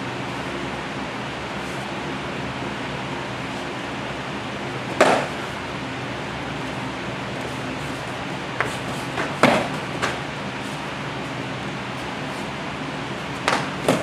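Padded practice sticks striking during a stick-fighting sparring bout: a few sharp hits, one about five seconds in, a cluster between eight and ten seconds, and two close together near the end, over a steady background hum.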